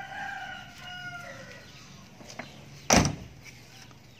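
A rooster crows once, a call of about a second and a half. About three seconds in, a single loud thump: the Toyota Kijang's door being shut.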